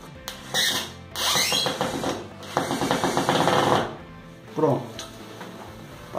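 Cordless drill driving a screw through a wooden backing board, running in three bursts: a short one, then two longer runs of about a second each as the screw is driven home.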